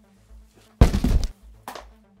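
A loud, heavy thud with a short crashing clatter about a second in, lasting about half a second: a person falling full length onto a concrete floor.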